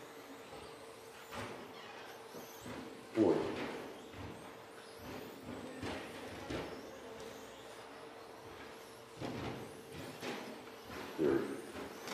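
2WD short course RC trucks with 13.5-turn brushless electric motors running laps on an indoor track. Their low running noise carries scattered light knocks from landings and hits on the track edging, over a steady faint hum.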